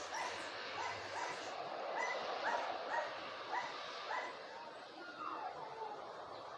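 A dog barking repeatedly in high-pitched yaps, about two a second.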